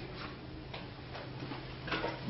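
Footsteps on a hard floor, faint taps about twice a second, over a low steady room hum.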